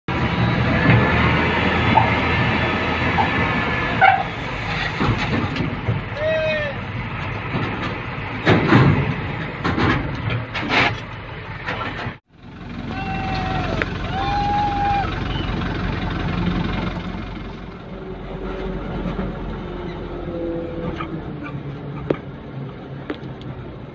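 Hino 500 hook-lift garbage truck's diesel engine running while its hydraulic arm holds the container tipped to unload, with clanks and rattles of metal. The sound breaks off abruptly about halfway and picks up again.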